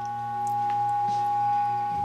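An 800 Hz sine test tone from an audio generator played through a Fender Champ tube amp's speaker. It grows louder in the first half second as the amp's volume is turned up, then holds steady, with a low hum underneath.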